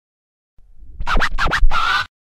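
Short intro sting of DJ record scratching: a low rumble builds, then about four quick scratches and a held tone that cuts off suddenly.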